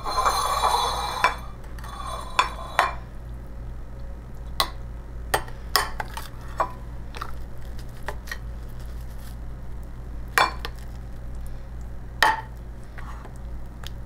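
Stainless-steel serving spoon scraping along the inside of a ceramic casserole dish, then a string of sharp separate clinks as it knocks against the dish and the plates while the casserole is scooped out.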